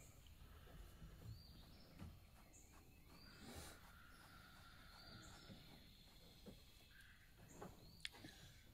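Near silence: faint outdoor background with a few distant bird chirps.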